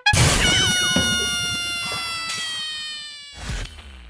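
An end-card sound effect: a sudden crash followed by a ringing chord of many tones that slowly fades and sinks slightly in pitch over about three seconds, with a second short hit near the end.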